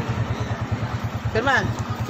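Motorcycle engine of a sidecar tricycle idling with a steady low putter. A brief voice cuts in about one and a half seconds in.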